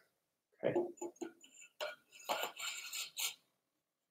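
Faint, scattered handling noises: a few short rubs and clicks as a seat post fitted with its clamp and seat sleeve is held and shifted inside a bamboo tube.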